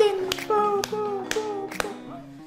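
Hands clapping in a steady rhythm, about two claps a second.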